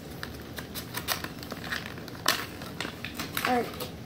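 Plastic blister pack and cardboard backing of a die-cast toy car being pulled open by hand, crinkling and crackling in irregular clicks, with one louder snap a little past halfway.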